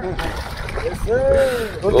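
A hooked milkfish thrashing and splashing at the water's surface beside the bank, a rough splashing noise through about the first second, followed by a man's drawn-out exclamation.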